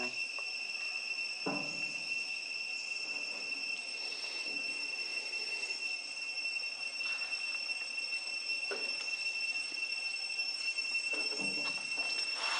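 Insects chirring in a continuous high-pitched drone that never changes in pitch or loudness, with a few faint short sounds over it.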